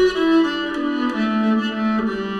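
Nyckelharpa bowed: a few notes stepping down in pitch, then a low note held for about the last second, its sympathetic resonance strings ringing along.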